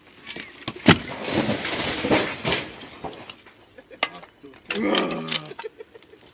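A brick chimney stack pushed over by hand, toppling with a sharp crack about a second in and then a clatter of falling bricks and mortar for a second or two. A man shouts near the end.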